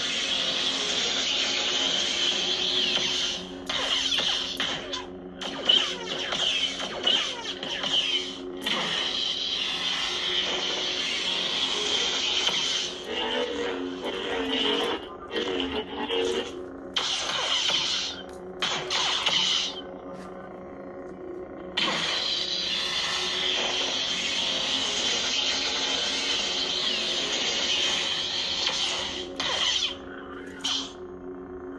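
Lightsaber soundfont 'Ghost Sentinel' (BK Saber Sounds) playing from a Proffie saber's speaker: a steady electronic hum with swooshing swing sounds that slide in pitch as the blade is moved. Several sudden sharp effect hits cut in along the way, and the hum drops away briefly about two-thirds of the way through before coming back.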